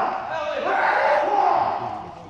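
Kendo fighters' kiai: loud, drawn-out shouts that bend in pitch, fading away near the end.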